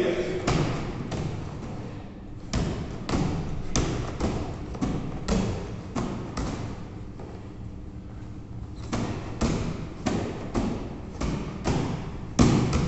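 A 9 kg medicine ball thrown back and forth at a fast pace: repeated thuds of the ball slapping into hands as it is caught and thrown, about two a second, with a short lull about two-thirds of the way through.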